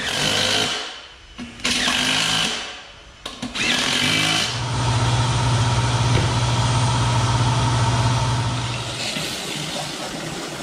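A few short noisy bursts, then a motor running steadily with a low, even hum for about four seconds before it fades.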